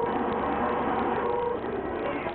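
Loud incoming transmission through a Galaxy CB radio's speaker, a dense, distorted, static-laden signal with no clear words.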